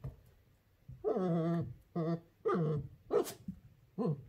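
Puppy barking and whining: four calls in about two and a half seconds, the first long and wavering, the last a short, sharp bark.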